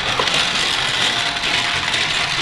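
Small plastic toy hovercraft rolling down a plastic spiral track, making a steady, continuous rattle of plastic wheels on the track.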